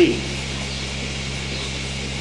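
Steady low machine hum with no rhythm and no change in pitch.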